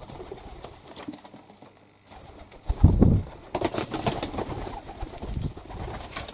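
Pigeons cooing low in a small room, with a burst of wing flapping about three and a half seconds in.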